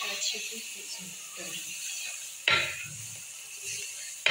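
Tomato-onion masala with freshly added ground spices sizzling in oil in a kadai, stirred with a wooden spatula; one loud sudden scrape about two and a half seconds in.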